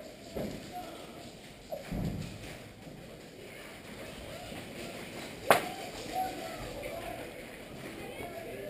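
A single sharp crack about five and a half seconds in, over a quiet background, with a dull low thud about two seconds in.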